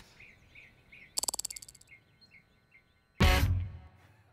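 Faint birds chirping, with a quick run of interface tick sounds about a second in as an on-screen slider is dragged. Near the end comes a sudden loud burst of audience laughter.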